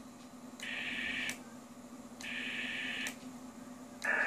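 Amateur radio transceiver on the 6-metre band: two short bursts of receiver hiss, each under a second, switching in and out with a click. A faint steady hum runs underneath.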